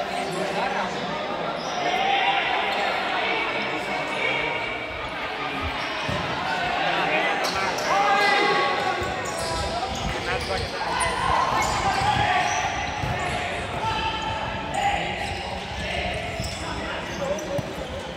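Futsal ball being kicked and bouncing on a hard indoor court, over shouts from players and spectators, all echoing in a large sports hall.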